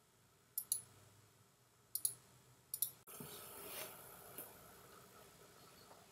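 Three quick double clicks of a computer button, then a soft hiss lasting about two and a half seconds.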